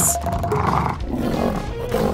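A big-cat-style roar sound effect from the pet carrier, starting about half a second in, over background music.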